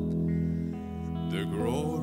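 Live worship band music: sustained guitar chords over a steady bass, with a man's singing voice coming in about halfway through.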